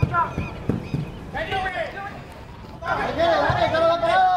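Shouted calls from footballers during open play: a short high shout at the start, another about a second and a half in, and a longer one from about three seconds in, with a few dull thumps in between.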